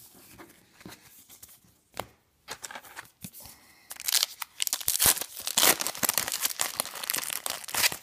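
A trading-card pack's crimped wrapper being torn open and crinkled by hand, loud and crackly from about halfway through. Before that, only a few soft taps and clicks.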